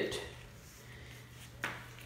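A faint steady low hum with a single short click about one and a half seconds in.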